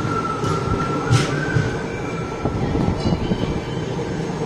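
Train rumbling along the rails with a thin, steady high-pitched squeal of wheels on track running over it, and one sharp clank about a second in.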